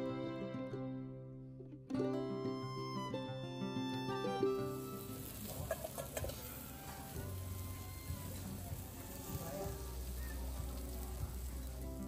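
Background music for about the first four seconds, then meat sizzling on a Korean barbecue grill plate, a steady hiss that runs until the music comes back at the very end.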